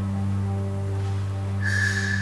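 Sustained electronic music from smartphone and tablet music apps: a steady low drone with several held tones above it, and a high held tone with a hiss over it entering near the end.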